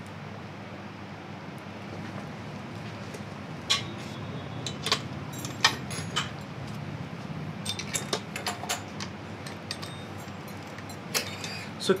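Scattered short metallic clinks and knocks as a stand mixer's metal paddle and stainless-steel bowl are handled and scraped, over a steady low hum.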